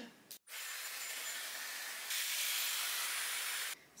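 Dyson Airwrap hair styler blowing on its highest fan and heat setting: a steady rushing hiss of air that gets louder about halfway and cuts off suddenly just before the end.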